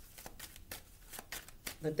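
Tarot cards being shuffled by hand: a run of quick, uneven card flicks and clicks, with a voice coming in near the end.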